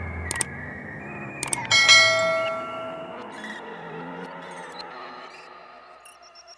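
Subscribe-button sound effect: two quick mouse clicks, then a bright bell chime a little under two seconds in that rings and fades away over a second or so.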